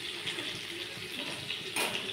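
Oil sizzling steadily as stuffed capsicums fry in a steel kadhai on a gas stove, with one brief sharp clack near the end.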